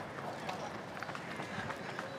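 Running footsteps of two runners on stone paving, a few faint footfalls over a steady outdoor background hiss.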